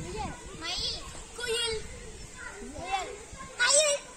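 Children's voices calling out in short high-pitched shouts and chatter during a play-yard game, about four calls, the loudest near the end.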